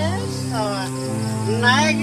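Film background score: sustained low drone chords under repeated sweeping, warbling synth tones.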